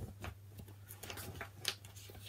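Faint taps and rustles of hands on the paper pages of a hardback picture book held open, a few separate small clicks over a low steady hum.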